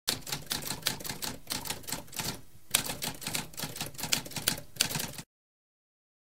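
Typewriter typing: a fast run of sharp keystroke clicks with a brief pause about halfway through. It stops abruptly a little after five seconds in.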